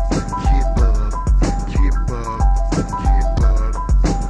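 1990s Memphis rap beat: deep bass kicks about every half second under fast, steady hi-hat ticks and a repeating high, bell-like synth melody.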